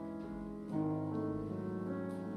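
Grand piano played solo: held notes ringing, then a new, louder chord struck about three-quarters of a second in and sustained.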